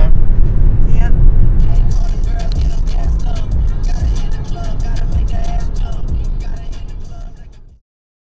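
Road noise of a moving car, a heavy low rumble, with music coming in over it after about a second and a half; both fade away and stop shortly before the end.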